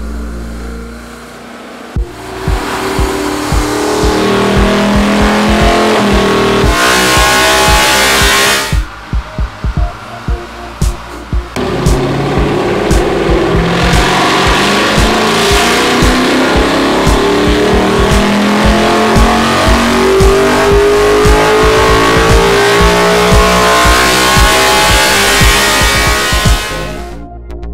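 BMW E92 M3's S65 V8 revving with its intake open to the air through bare test trumpets and runners, so the induction noise is loud. The revs climb steadily for several seconds and drop off suddenly, the engine is blipped a few times, and then the revs rise slowly and evenly in one long climb.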